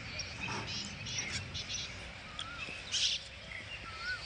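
Birds chirping: short, scattered calls, some of them quick rising-and-falling whistled notes, over a steady low background noise.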